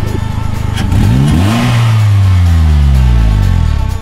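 Polaris Slingshot's GM four-cylinder engine revved once about a second in, the revs then falling slowly back over a couple of seconds. Background music plays underneath.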